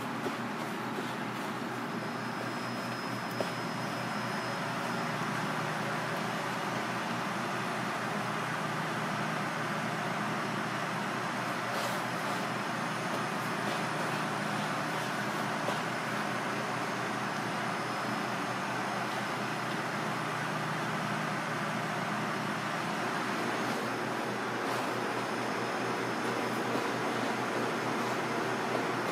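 Steady background hum of commercial kitchen machinery, with a faint steady tone that stops near the end and a few light clicks.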